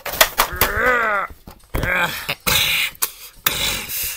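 A voice gives a single rising-and-falling cry, amid clicks and knocks from plush toys and a plastic toy door being handled, followed by hissing vocal noises made with the mouth.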